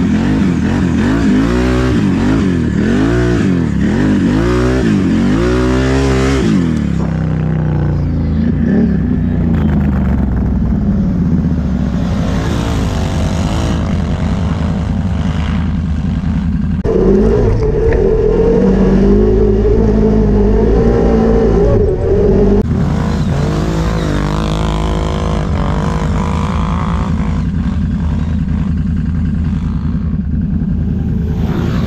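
ATV engine running under load in snow, revving up and down in quick swells for the first several seconds, then settling into a steadier drone. A little past the middle it holds noticeably higher revs for about five seconds before dropping back.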